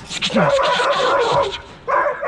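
A greyhound giving one long, rough, high-pitched yipping cry that lasts about a second and a half.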